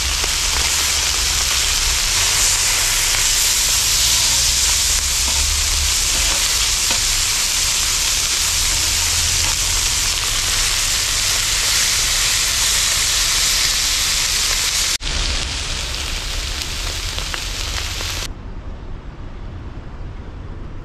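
Masala-coated Indian mackerel (ayala) frying on a flat iron pan, a steady hiss of sizzling oil. It breaks off abruptly twice near the end and gives way to a quieter, duller background.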